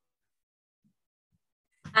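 Near silence, then a woman starts speaking right at the end.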